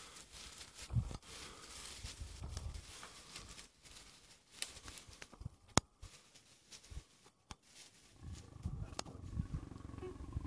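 African lions growling low during mating, the growls growing louder near the end as the male mounts the lioness. A few sharp clicks in the middle.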